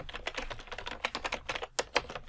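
Computer keyboard typing: a quick, uneven run of keystrokes as a layer name is typed.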